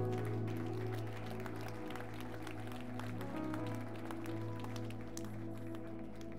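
Soft sustained keyboard chords held under a prayer, changing chord about three seconds in, with scattered hand claps from the congregation.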